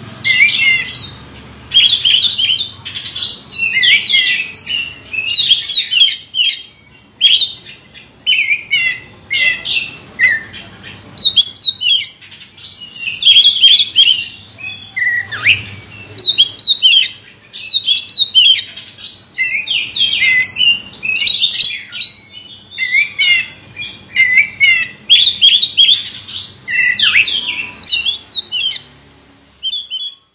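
Oriental magpie-robin (kacer) singing loudly in a cage: a rich, varied song of whistles and chirps, delivered in phrases of a second or two separated by short pauses.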